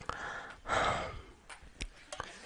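A man's breathy exhale, like a sigh, close to a headset microphone, swelling about half a second in and fading within half a second. A couple of faint sharp clicks come just before the end.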